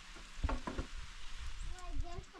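Two light knocks and scraping as bricks are set into a low wall, over a steady hiss.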